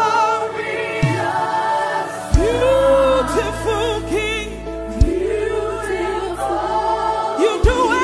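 African gospel worship medley: a choir singing with vibrato over a band, with a few deep bass hits along the way.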